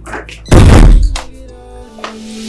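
A single loud, deep thump about half a second in, dying away over the next half second, over steady background music.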